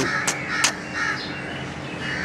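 A few short, high calls, such as birds calling, with three sharp clicks in the first second and a faint steady hum underneath.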